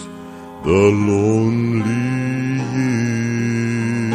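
Southern gospel male quartet singing in close harmony with accompaniment. After a short lull at the start, the voices swoop up together about half a second in and hold long, sustained chords.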